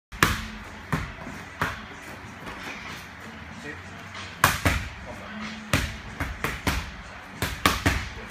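Boxing gloves striking focus mitts: sharp slapping hits, single punches in the first two seconds, then quick combinations of two and three in the second half.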